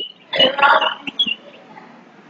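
A short throaty voice sound, not a clear word, about half a second in, followed by low room noise.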